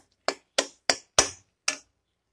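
Metal spoon knocking against the side of a metal kadai while thick chutney is stirred: five sharp clicks at a quick, slightly uneven pace, each with a brief ring.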